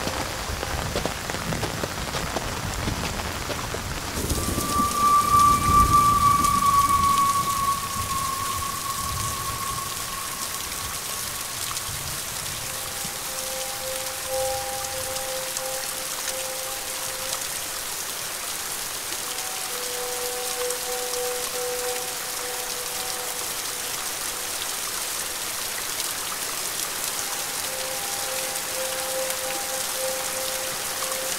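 Heavy rain falling steadily, with a low rumble of thunder swelling and fading about four to eight seconds in.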